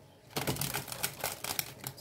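A deck of tarot cards being shuffled by hand: a rapid run of card flicks and clicks that starts about a third of a second in.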